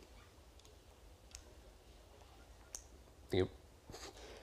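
A quiet pause with a few faint, sharp clicks spread across it. Near the end comes one brief, louder sound from a person's voice.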